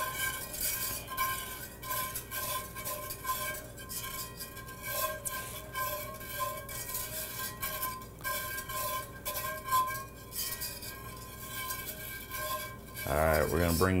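A utensil stirring a cream sauce in a metal pan, with frequent light clicks and scrapes against the pan.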